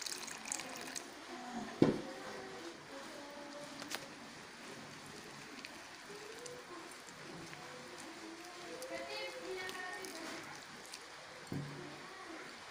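Warm water poured from a glass into a glass bowl of dry rice flour and sugar, with one sharp knock about two seconds in, then a wire whisk working the wet flour.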